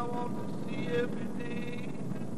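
Steady engine and road noise inside a moving vehicle's cab, with a song playing over it: a man's voice holds long sung notes.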